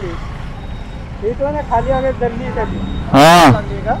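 Steady low rumble of motorcycles and other vehicles in a stopped highway traffic jam, with people talking nearby and one man's voice loud just after three seconds in.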